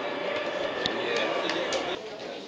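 Indistinct shouting voices of footballers and onlookers on an open football pitch, with a few short, sharp knocks over them.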